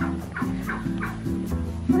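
Light acoustic background music of plucked guitar-like notes, each note short and followed by the next every few tenths of a second.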